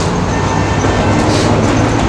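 A heavy vehicle's engine running nearby: a steady low drone over traffic noise.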